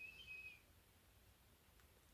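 A faint breath drawn in through the nose, with a thin whistle, lasting about half a second, then near silence.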